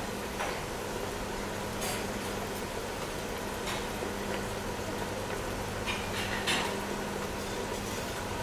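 Quiet kitchen background: a steady low hum with a few faint, brief clinks and rustles spread through it.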